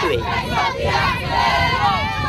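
A group of children cheering and shouting together, many voices overlapping.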